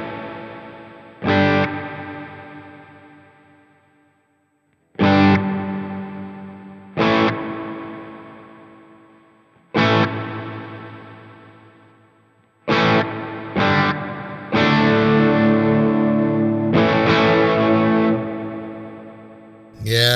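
Electric guitar chords strummed through the Sonicake Matribox II's Mod Reverb, a modulated reverb, with its low and high end turned all the way up. There are about nine strums, spaced out in the first half and closer together after about 12 seconds, and each chord rings out and fades slowly in a long reverb tail.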